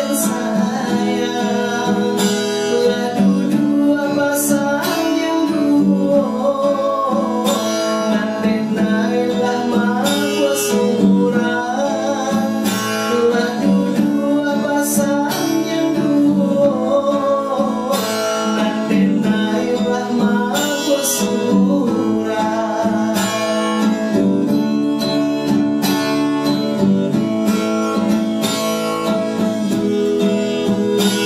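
A man singing with an acoustic guitar strummed along under his voice.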